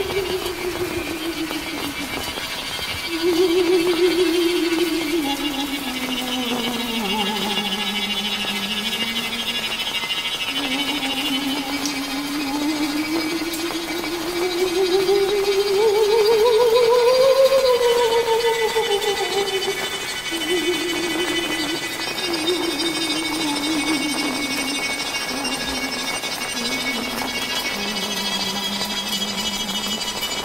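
Eerie horror-style drone music: one wavering tone that glides slowly down, rises to a high point a little past halfway, then sinks again, over a steady hiss of rain.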